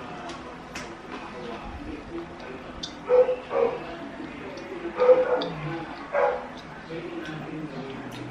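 A dog barking about five times in short clusters through the middle of the stretch, over a faint steady murmur of voices in the background.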